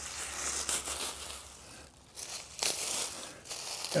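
Dry, winter-dead hosta stems and leaves crackling and rustling as they are pulled out of the bed by hand, in irregular bursts with a brief lull about two seconds in.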